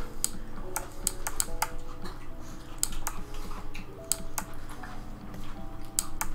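Computer keyboard keys clicking irregularly, about a dozen sharp clicks, over soft background piano music.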